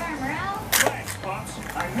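Dialogue from a television playing in the background, with a single sharp plastic click about three quarters of a second in as a segment of a Mini Brands surprise capsule is pried open.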